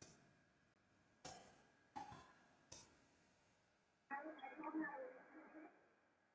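Four faint, separate clicks in the first three seconds, then quiet mumbled speech from about four seconds in that stops shortly before the end.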